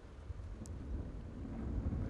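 Low, uneven rumble of open-air background noise, with a faint short click about two-thirds of a second in.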